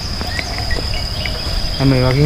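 Insects making one steady high-pitched whine, over a low rumble, with a few faint short chirps.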